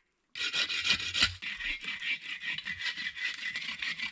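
Hand bow saw cutting through a small tree trunk near its base: quick back-and-forth rasping strokes of the toothed blade through the wood, starting about a third of a second in.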